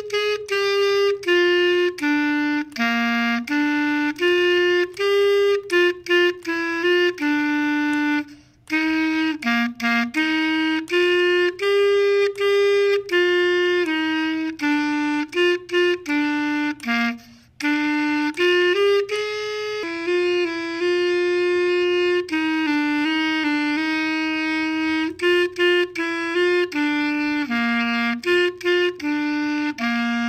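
Clarinet playing a beginner method-book exercise through from start to finish: a steady line of short and held notes, moving mostly by step, with two short breaks for breath about eight and seventeen seconds in.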